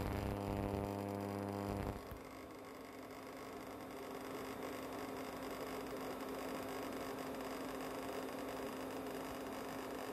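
Induction cooktop heating a pan of water, giving a mains-type hum. For about the first two seconds it is a buzz with a row of overtones. It then drops to a quieter, steady single-tone hum with a faint hiss.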